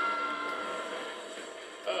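Film trailer soundtrack played through computer speakers: a held tone that slowly fades away, then a voice starts to speak near the end.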